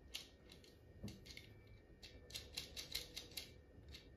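A small plastic toy figure being handled and turned in the hands, giving a run of faint, irregular light clicks and taps.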